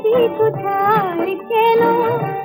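A woman sings a Bengali film song with an orchestral accompaniment. Her voice glides and ornaments between held notes over a light, regular beat.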